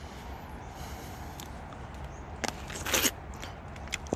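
Biting into a soft, juicy plumcot (a plum–apricot hybrid) close to the microphone: two short bite sounds about two and a half and three seconds in, over a steady low background noise.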